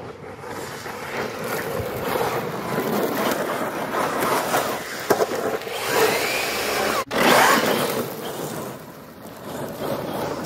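Arrma Big Rock 3S RC monster truck driving hard over loose gravel and cracked pavement: tyres scraping and scrabbling through the stones, with the electric motor's whine rising and falling as it speeds up and slows down. The sound cuts out for an instant about seven seconds in.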